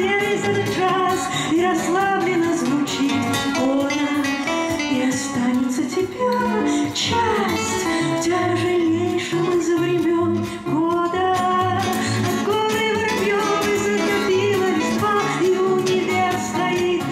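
Live acoustic band music: two acoustic guitars, one steel-string and one nylon-string, playing under a wordless lead melody, with a cajon keeping a steady low beat.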